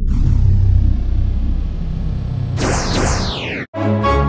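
Jet-aircraft sound effect: a steady low engine rumble, then two quick whooshes falling in pitch as of jets flying past, cutting off suddenly just before the end.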